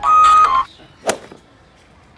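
A flute-like tune ends on a held high note that cuts off just over half a second in. About a second in comes a single sharp smack.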